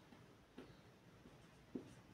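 Faint scratching of a marker pen writing on a whiteboard, with a couple of brief stroke sounds.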